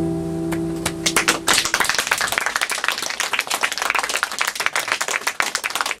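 The last strummed chord of an acoustic guitar rings out and fades over the first second and a half. About a second in, audience applause starts and carries on to the end.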